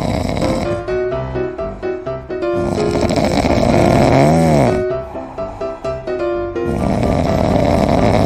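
A sleeping domestic cat snoring: two long, loud snores about four seconds apart, over background music.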